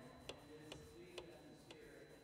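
Near silence with a faint, regular ticking, four ticks about half a second apart, over faint distant speech.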